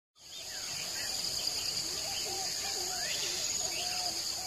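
Nature ambience: a steady, high insect chorus like crickets, with faint calls that slide up and down in pitch over it.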